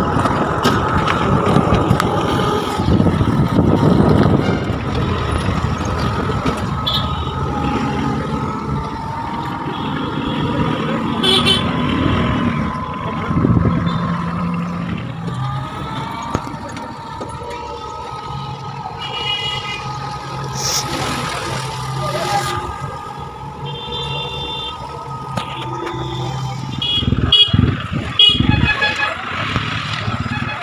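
Road traffic heard from a moving e-rickshaw: steady motor and road noise, with short horn toots from vehicles several times. A few louder knocks come near the end.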